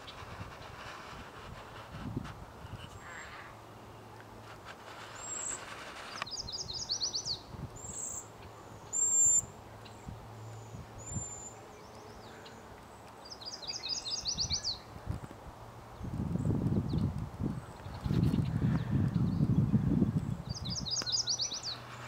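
Songbirds singing outdoors: a short phrase of rapid high notes repeats three times, about seven seconds apart, among scattered single chirps. For several seconds near the end a louder low rumble, like wind buffeting the microphone, covers the background.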